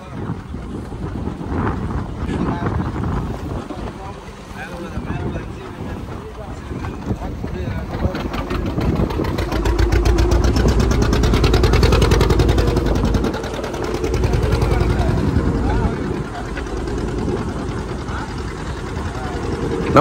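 A fishing boat's engine running under way, with rushing water and wind; the engine hum is loudest around the middle. Voices are heard faintly.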